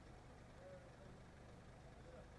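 Near silence, with only a faint, steady low hum.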